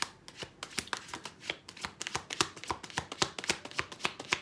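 A deck of tarot cards being shuffled hand to hand, packets of cards slapping and clicking in a quick, uneven run.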